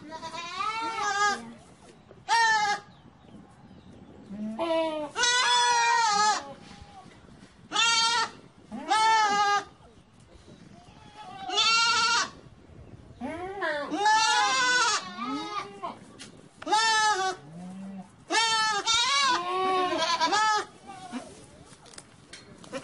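Young goats (kids) bleating again and again, about ten calls in all, some overlapping. The calls are high and quavering, each a short 'beee' of up to about a second and a half.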